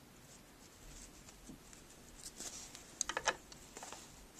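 Faint rustling of fabric and binding tape being handled and slid into a plastic tape binding presser foot, with a few soft clicks around two and a half and three seconds in.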